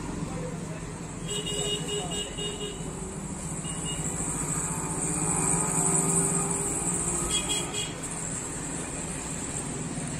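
Road traffic: a vehicle engine running with a steady low hum, getting louder around the middle as traffic passes. A high horn sounds for over a second about a second in and briefly again near the end.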